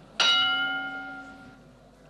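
A single bell-like chime, struck once a moment in and fading away over about a second and a half.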